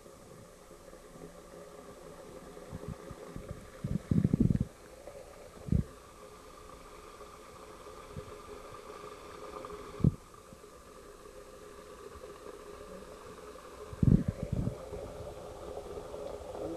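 Dull low thumps of handling noise on a camcorder microphone, a cluster about four seconds in, single ones near six and ten seconds and another cluster near the end, over a faint steady hum.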